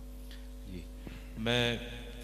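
Steady electrical hum of a public-address sound system, with a man's voice over the microphone drawing out a single word, "main", about one and a half seconds in.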